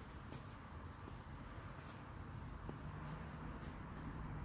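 Faint steady background noise with a few light, irregularly spaced clicks, about four in all and two of them close together near the end.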